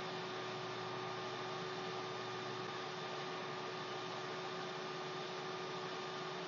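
Steady background hiss with a faint constant electrical hum: the recording's noise floor, with no other sound.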